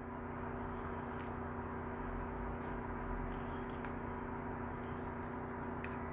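A steady electrical machine hum, with a few faint clicks as a small hand blade scrapes and trims the edge of a light-cure acrylic denture frame.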